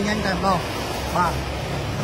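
A man talking over a steady low rumble from a Lexus NX200t's 2.0-litre turbocharged four-cylinder engine idling, heard at its exhaust tips.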